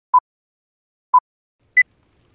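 Film-leader countdown beeps: two short, identical electronic beeps a second apart, then a higher-pitched beep near the end.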